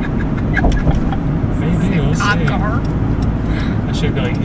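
Road and engine noise inside a moving car's cabin, a steady low rumble, with an indistinct voice speaking briefly about halfway through.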